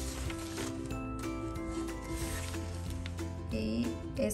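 Background music with long held notes, and a rubbing hiss of a plastic pattern ruler sliding across paper near the start.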